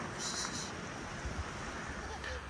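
Steady outdoor background noise with light wind rumbling on the microphone, and a brief high hiss about a quarter second in.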